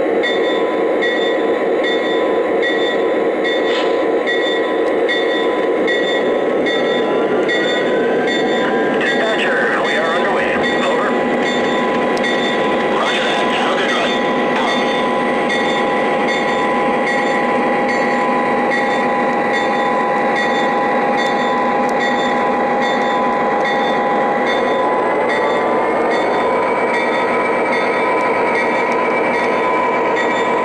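Lionel Legacy GP35 model diesel locomotive's RailSounds engine sound playing through its onboard speaker as the train runs, a steady diesel drone whose pitch rises as the engine revs up about eight seconds in and again about 25 seconds in.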